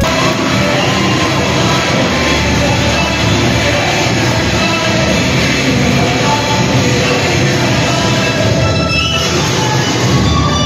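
Loud dance music with a steady beat, played for a group stage dance; the music changes to a different track near the end.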